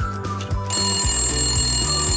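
Background music with a regular beat. About two-thirds of a second in, a countdown timer's end-of-time alarm starts ringing, a bright high ring that carries on over the music.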